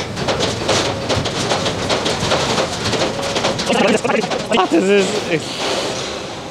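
A cleaning station's steel scraper blade scraping concrete residue off a steel formwork table, a dense run of scratching and clattering.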